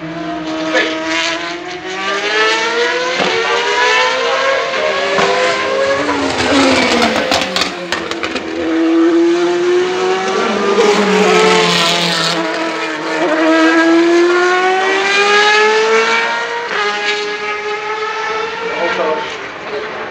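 Racing motorcycle engines at full throttle on a circuit. The pitch climbs in steps with short breaks at each upshift, then falls as the bike brakes and shifts down. This rise and fall repeats several times as bikes come and go past the grandstand.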